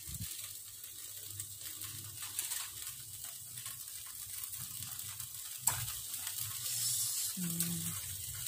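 Marinated meat sizzling on the wire rack of an electric grill: a steady crackling hiss, with one sharp click a little before six seconds in.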